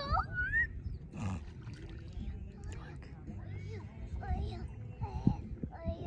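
Faint, indistinct voices of people calling out on the water, some high-pitched, over a steady low rumble.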